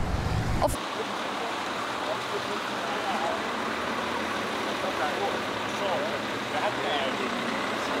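Steady city street traffic noise, an even hiss, with faint voices in the background.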